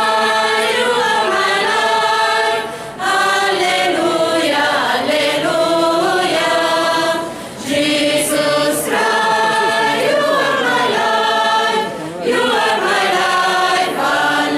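Mixed choir of women and men singing, in long held phrases with short breaks between them about three times.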